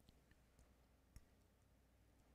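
Near silence: faint room tone with a low hum and two faint clicks about a second apart.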